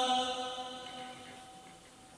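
A man's melodic Qur'an recitation: the end of a long held note, which fades away over about a second and a half into the hall's echo, leaving a quiet pause.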